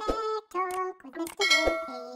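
Intro jingle of bright metallic clang and ding hits: about six pitched struck notes in quick succession, each ringing briefly, the loudest near the end.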